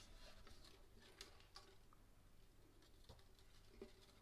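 Near silence, with a few faint ticks and rustles of fingers handling and knotting nylon ukulele strings.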